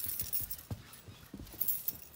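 A bunch of metal keys jingling as a toddler shakes them in his hand. It comes as short clinking bursts near the start and again near the end.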